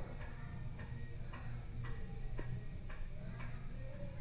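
Steady, even ticking, about two ticks a second, over a low steady hum.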